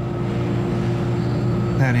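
A steady low hum, with a fainter higher tone held above it: the background drone of the room. A man's voice begins near the end.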